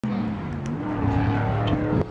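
A car engine running, its pitch rising a little about a second in as it revs.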